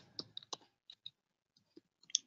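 Faint keystrokes on a computer keyboard: about half a dozen short, separate clicks at uneven spacing as a few characters are typed.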